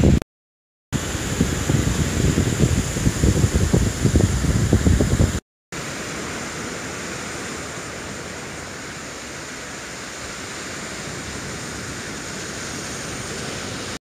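Gusty wind buffeting the microphone with the hiss of the sea behind it. After an abrupt cut to silence, a softer, steady, even hiss of surf and breeze follows.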